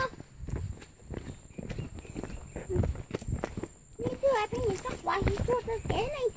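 Footsteps on a dirt forest path as someone walks along, with a person's voice talking from about four seconds in.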